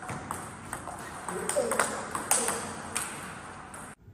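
Table tennis rally: the ball ticking sharply off paddles and the table about every half second, the exchanges cutting off abruptly just before the end.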